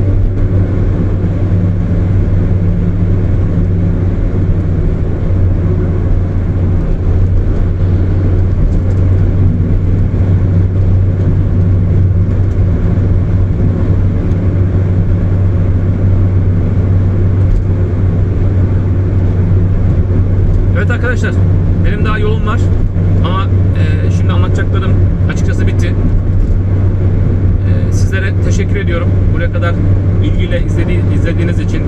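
Car driving at motorway speed, heard from inside the cabin: a steady low drone of engine and tyre noise.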